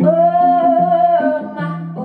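A woman singing one long held note for about the first second, then shorter lower notes, over a picked hollow-body electric guitar in a live performance.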